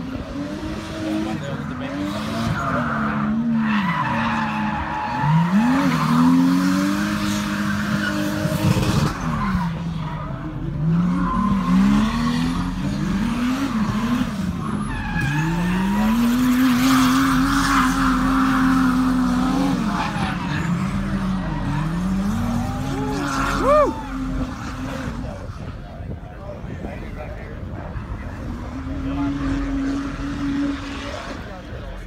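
Drift car engine revving up and dropping back again and again as the car slides, with tires squealing in long stretches during the drifts.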